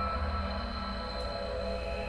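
Ambient electronic drone from performance documentation played over room speakers: many steady held tones over a low rumble, unchanging through the moment.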